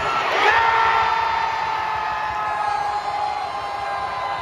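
Soccer stadium crowd breaking into cheers for a goal, swelling about half a second in, with nearby fans holding long shouts over the crowd noise.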